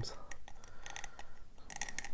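Small hard-plastic toy parts clicking and rubbing as the black plastic pompadour hair piece is pressed onto a mini Mr. Potato Head figurine. The sound is a scatter of light clicks that grows denser near the end.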